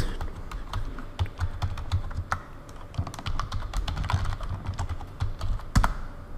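Typing on a computer keyboard: a run of irregular keystrokes, with one louder stroke near the end.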